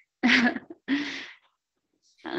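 A person laughing: two short, breathy bursts of laughter.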